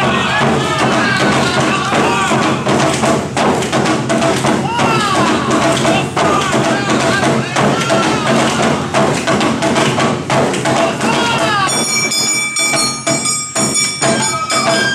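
Awa Odori festival music in a driving regular beat: drums and clanging metal percussion with a melody, overlaid by the dancers' short rhythmic shouted calls. About three-quarters of the way through the calls stop and a bright ringing metallic sound comes forward.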